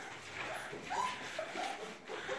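Bernese mountain dog puppies whimpering and yipping, several short high calls, eager for the food being brought to them.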